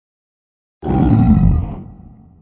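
A sudden loud, deep roar bursts out of silence almost a second in, holds for about a second, then dies away over the next second: a monster-style roar sound effect.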